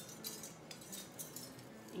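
Faint small clicks and clinks of a decorative light garland and bow picks being handled and tucked into a wired ribbon bow, several light ticks spread across the two seconds.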